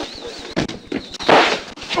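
Two bangs heard through a body-worn microphone, a short one about half a second in and a louder one about a second and a half in, with constant rustle and crackle from the microphone. The bangs are gunshots fired from inside a house at officers during a forced-entry raid.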